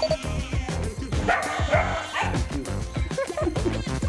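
Background music with a steady beat, with puppies barking about a second in and again briefly near the end.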